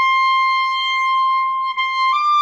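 E-flat clarinet holding one long, high sustained note, with a brief break near the end.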